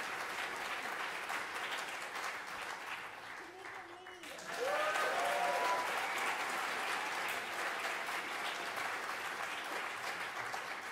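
Concert audience applauding. The clapping thins out about four seconds in, then swells again with a few voices calling out and whooping.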